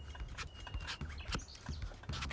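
Chef's knife being forced down through a raw butternut squash, the hard flesh giving with a run of sharp, irregular crunching cracks.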